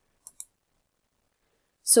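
Two quick, faint clicks about 0.15 s apart, like the press and release of a computer mouse button as the slides are worked, then quiet until a voice starts near the end.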